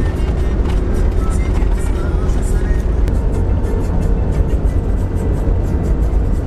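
Cabin noise inside a 4x4 driving across a salt flat: a steady, loud low rumble of engine and tyres on the salt crust, with music and voices mixed in.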